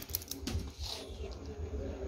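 A few light metallic clicks near the start from a dog's chain collar and leash clasps shifting as it moves, over a steady low rumble.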